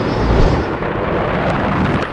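A loud, steady rumble with deep bass, a cartoon sound effect that fades out just after the end.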